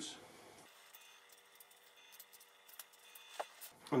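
Faint, scattered clicks and snips of scissors cutting thick roots from a larch bonsai's root ball, with the sharpest snip near the end.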